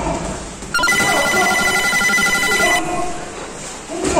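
An electronic bell tone rings steadily for about two seconds, starting just under a second in and cutting off sharply; in a boxing gym this is typical of a round timer's signal.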